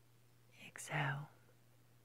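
A woman's voice softly saying "So," a little over half a second in, over a faint steady low hum.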